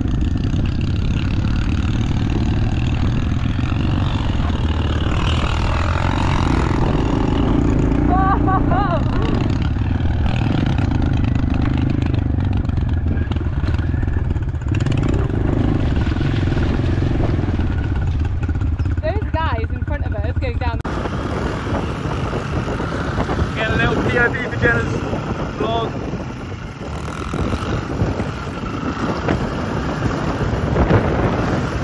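Trail motorbike engine running while riding, with heavy wind rumble on the microphone. The sound changes abruptly about two-thirds of the way through.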